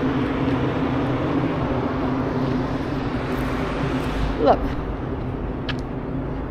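Steady road traffic noise from cars on a wide road, with a constant low hum running through it.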